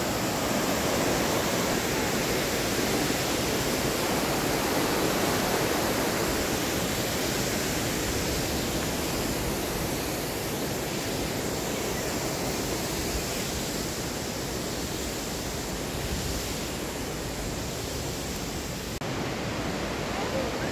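Rushing water of a rocky mountain river tumbling over rapids, a steady even rush with no let-up.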